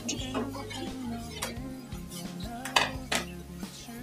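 A metal spoon stirring liquid in an aluminium saucepan, knocking against the pan's side in several sharp clinks, over background music.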